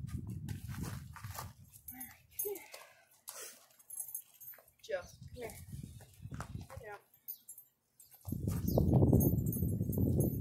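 Domestic goat bleating in several short, wavering calls while being haltered, with a low rumble that is loudest near the end.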